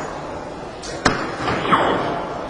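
A soft-tip dart striking the face of an electronic dartboard: one sharp click about a second in.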